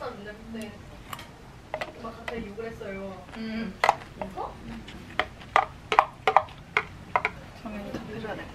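A spoon clicking and scraping against a clear food container while someone eats: scattered light clicks at first, then a quick run of sharp clicks in the second half. Quiet voices talk underneath.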